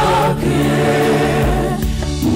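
Mixed choir of men's and women's voices singing a gospel song through microphones, with long held notes.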